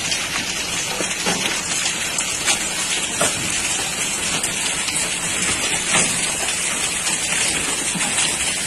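Heavy rain pouring down in a steady rush, with a few sharper hits standing out now and then.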